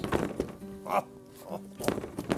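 Cordless drill with a stacked 2-inch and 1.5-inch hole saw being eased into an already-cut hole that serves as the pilot: a faint buzz with a couple of short bursts about a second in and a sharp knock near the end.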